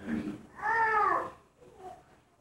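A short high-pitched cry that rises and then falls, lasting under a second, just after a brief lower sound.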